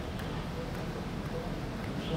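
Restaurant background: a steady low hum with faint, indistinct voices.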